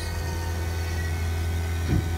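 Vacuum pump running with a steady low hum, its valve open so it is now evacuating a car's air-conditioning system through a single low-side hose.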